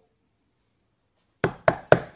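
Knocking on a door: three quick, sharp knocks start about a second and a half in.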